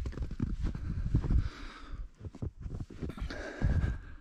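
Footsteps in fresh snow: a string of irregular soft thuds as someone walks along a snowed-in truck.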